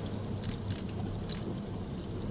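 Steady low hum of a boat's engine running, with a few faint ticks over it.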